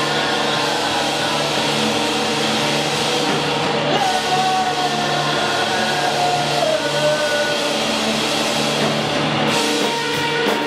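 Live rock band playing: electric guitars and a drum kit through a PA, loud and unbroken.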